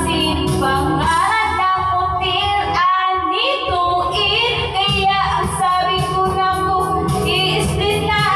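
A woman singing karaoke into a corded microphone over a backing track with a steady beat, with a brief break in her voice about three seconds in.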